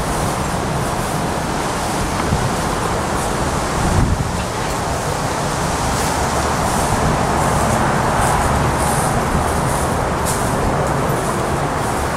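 Steady road-traffic noise that swells a little louder in the middle.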